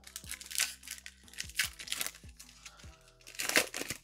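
Wrapper of a Topps Chrome baseball card pack being torn open and pulled apart by hand: a run of sharp crinkles and crackles, with the loudest burst about three and a half seconds in. Quiet background music plays under it.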